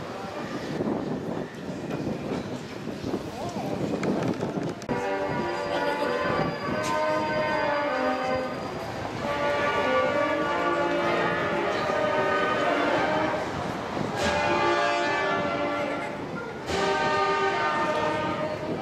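Brass band playing slow, held chords of a processional march, starting about five seconds in, with short breaks between phrases. Before it comes a crowd murmur.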